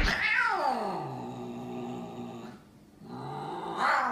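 Domestic cat yowling at a second cat: one long drawn-out yowl that slides down in pitch and holds low, then, after a brief pause, a second low yowl near the end.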